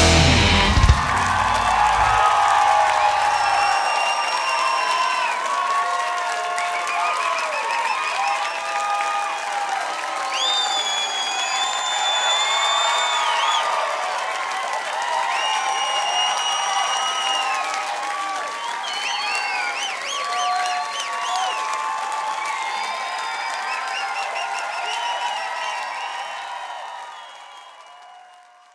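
A live rock band's final chord stops within the first second or two. A concert audience then cheers, whistles and applauds, and the sound fades out near the end.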